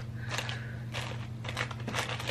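Faint handling noises, a few soft clicks and rustles, as a ribbon hair bow with small sewn-on jingle bells is turned in the hands, over a steady low hum.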